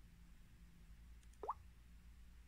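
A single short plop with a quickly rising pitch about one and a half seconds in, the Samsung phone's touch-feedback sound as the save control is tapped. Otherwise near silence with a faint low hum.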